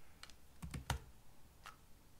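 Computer keyboard keystrokes as a short terminal command is typed: a quick run of four clicks, the loudest a little under a second in, and one more keystroke near the end.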